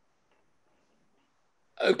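Near silence, a pause on a video call, then a man starts speaking near the end.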